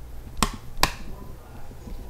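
Two sharp clicks, a bit under half a second apart, over a faint steady low hum.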